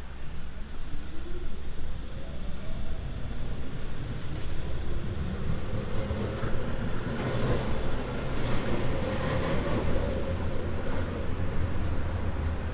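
Street traffic on a wet road: cars driving past with tyre hiss from the wet surface, loudest about six to ten seconds in, over a steady low rumble. Near the start, the rising whine of a vehicle pulling away.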